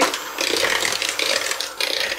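Electric hand mixer running, its beaters whisking egg yolks with sugar in a bowl: a steady motor whir over the churning of the beaters.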